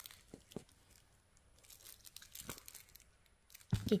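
Faint rustling with a few soft clicks, from a puppy's fur and a bedsheet as the puppy is handled and shifts on the bed. A voice starts near the end.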